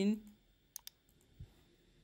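Computer mouse button clicks: two sharp clicks in quick succession about a second in, followed by a faint low thump.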